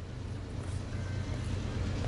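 Diesel freight locomotives approaching at the head of a train, their engines running with a steady low rumble that slowly grows louder.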